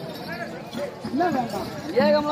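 A performer's voice declaiming lines in a rising and falling, half-sung delivery, with a few dull thuds.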